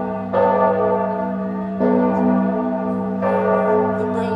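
Large church bell tolling, three strokes about a second and a half apart, each ringing on over a steady deep hum.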